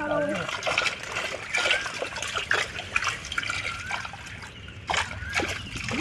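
Pond water splashing and trickling as a fishing net is dragged through it and lifted. The sound is uneven, made up of many small splashes.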